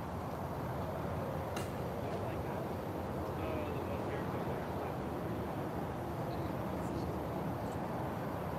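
Steady low outdoor background noise, with a single sharp click about one and a half seconds in.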